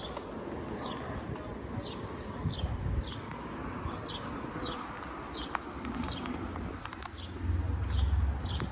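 A small bird chirping over and over: short, high chirps that fall in pitch, about one and a half a second, over a low outdoor street rumble that grows louder near the end.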